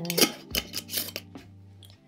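A few light clicks and clinks of small glass herb jars being handled and set down on a wooden table.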